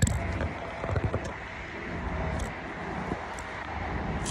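A sharp click, then a few light knocks and rustles from handling, over a steady low outdoor background rumble.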